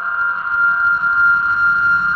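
Electronic dubstep / UK bass music: a steady, high synth tone held over a low bass.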